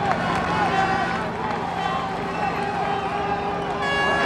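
Large crowd cheering and shouting, many voices overlapping, with air horns sounding long steady notes.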